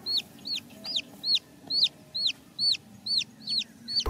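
A chick peeping over and over in a steady rhythm, between two and three high-pitched calls a second, each sliding down in pitch.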